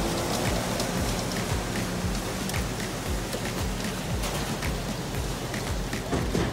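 Concrete line pump working: its diesel engine running under a steady noisy wash, with regular low thumps from the pumping strokes.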